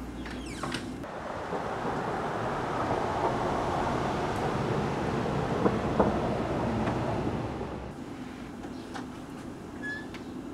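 Outdoor rushing noise of a vehicle passing, which swells over a few seconds and then fades away.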